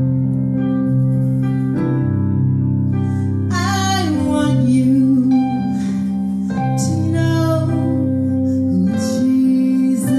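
A woman singing a slow gospel song into a handheld microphone over a backing track of sustained keyboard chords; her sung phrases come and go over the held chords.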